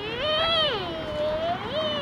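A long, drawn-out vocal sound of one wavering voice: it rises in pitch, falls, then rises again near the end, without breaking into syllables.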